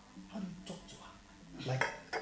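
A drinking glass clinks a couple of times as it is handled and set down, among short phrases of a man's voice.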